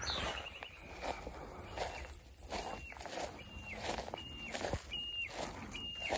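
Footsteps rustling through long grass. From about halfway through, a short, high, even call repeats about every three-quarters of a second.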